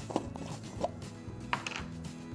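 Red plastic lid being twisted off a peanut butter jar and set down on a wooden table: a few small clicks and taps. Soft background music plays throughout.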